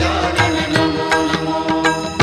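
Devotional aarti music: voices singing a hymn over a steady beat of percussion strikes, about four a second.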